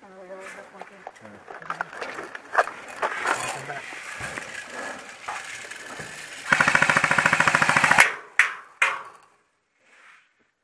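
An airsoft gun firing one rapid fully automatic burst of about a second and a half, starting about six and a half seconds in, followed by two single sharp cracks.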